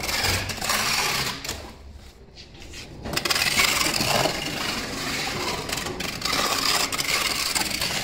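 Packing tape being pulled off a hand-held roll in long pulls and pressed onto cardboard boxes, with a lull about two seconds in.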